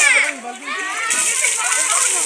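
A group of children and women shouting and shrieking excitedly, with water splashing from about a second in as a bucketful is thrown.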